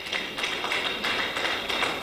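Audience applauding: a steady patter of many quick hand claps.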